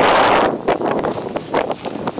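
Wind buffeting the microphone: a loud rush in the first half-second, then weaker gusts.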